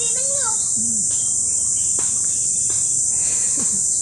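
A steady, high-pitched drone of insects in the riverside vegetation, the loudest sound throughout, with a short spoken word at the start and a couple of faint clicks in the middle.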